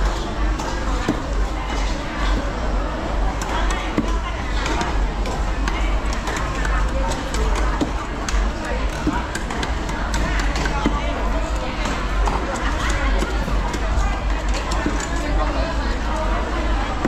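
Busy market chatter: several people talking over one another, with frequent short clicks and knocks of handling.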